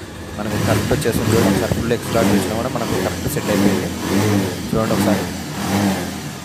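Bajaj Pulsar 150's single-cylinder four-stroke engine running and being revved over and over with the throttle, rising and falling in waves about once a second.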